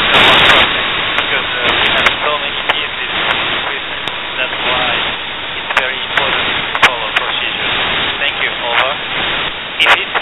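Amateur-radio reception of the International Space Station's voice downlink: a steady rush of radio receiver noise, thin and narrow like a telephone, with a weak voice breaking through now and then and a few sharp clicks. The signal is weak and noisy.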